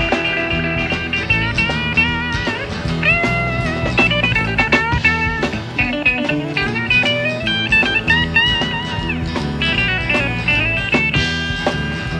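Country-rock band playing an instrumental break between verses: a lead line of bending, wavering notes over a full band backing, with no singing.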